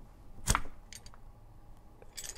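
A vegetable peeler driven hard down a potato gives a single sharp click about half a second in, then a couple of faint ticks.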